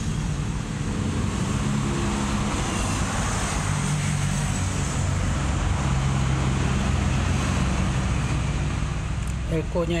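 A running engine, its low hum shifting up and down in pitch every couple of seconds over a steady hiss.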